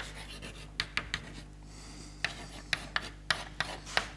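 Chalk writing on a blackboard: a run of short, irregular taps and scratches, sparser in the middle, over a faint steady room hum.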